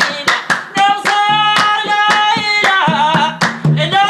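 Mauritanian madh praise-singing: a man's voice carrying a melody over a large hand-struck skin drum and hand clapping in a steady rhythm of about three to four strokes a second.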